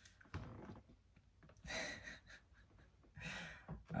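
A man's soft, breathy laughter: a few short exhaled chuckles.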